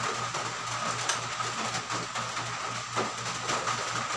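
A steady mechanical hum with a faint constant high tone and a regular low pulsing, under a soft rustle of a cloth towel being rubbed over hands.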